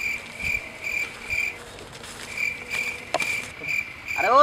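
Insect chirping: short high-pitched chirps repeating about two or three times a second, with a pause of about a second midway.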